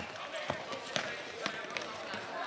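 Sharp clacks of plastic floorball sticks and ball during play, a few knocks about half a second apart, ringing in a large sports hall, with players' voices in the background.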